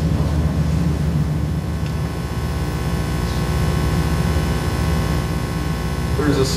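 Steady low hum of a hall's background noise, with a faint electrical buzz of many steady tones above it.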